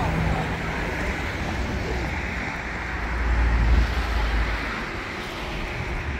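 City road traffic going past: a steady rushing wash of car noise, with a low rumble that swells about three to four seconds in as a vehicle passes.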